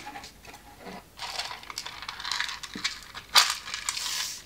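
A plastic wire-jig peg board being handled: light plastic clicks and rattles from its small drawer and pegs, with rustling of paper from about a second in and a sharper click at about three and a half seconds.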